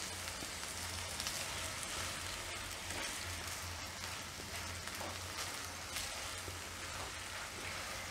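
Green beans and tomatoes frying steadily and faintly in a nonstick pan over a low gas flame, with a few soft scrapes and taps of a silicone spatula stirring them.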